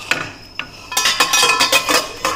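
Stainless steel cookware clattering: a light knock, then about a second in a quick run of metallic clinks and knocks with a ringing tone, as a steel lid and pan are handled.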